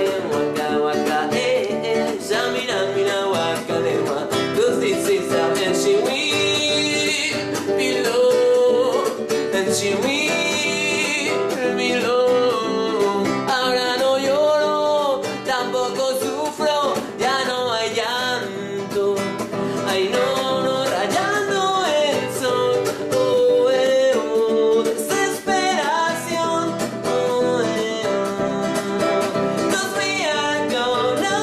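A man singing pop melodies to a classical (nylon-string) acoustic guitar, strummed over and over through the same four-chord progression: G major, D major, E minor, C major.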